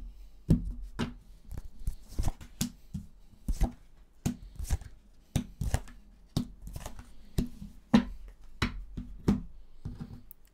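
Lenormand cards being dealt and laid down one at a time on a wooden table: sharp taps and slaps, about two a second at an uneven pace.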